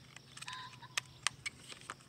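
Faint handling noise from a pistol and an old fabric holster being worked in the hands: a handful of short, sharp clicks spread across two seconds, over a low steady hum.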